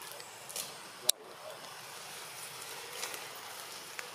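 Outdoor forest ambience: a steady high hiss with a few sharp clicks, the loudest about a second in.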